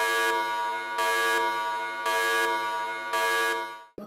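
Warning buzzer sound effect: a steady, buzzing alarm tone that swells about once a second and cuts off just before the end.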